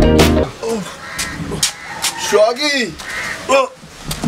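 Background music cuts off about half a second in; then a crow caws, a longer call past the middle and a shorter one near the end.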